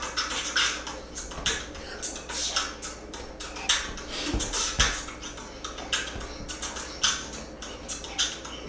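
Beatboxing: a quick, steady rhythm of hissing and clicking mouth-made percussion, with a couple of deeper thumps about halfway through.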